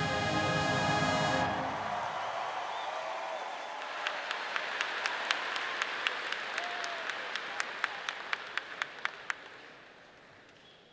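A marching band's brass holds the final chord of the national anthem, cutting off about a second and a half in, followed by applause from a large crowd in a reverberant arena, with a string of sharp, separate claps standing out before it fades near the end.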